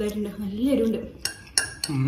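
Metal forks clinking and scraping against plates while noodles are eaten, with three or four sharp clinks in the second half. A person's low closed-mouth hum fills the first second.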